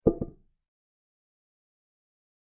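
Chess software's piece-move sound effect: a short wooden click made of two quick knocks, dying away within half a second as a piece lands on the board.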